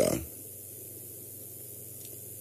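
A man's voice trails off at the start, then a pause with only a faint steady low hum and hiss.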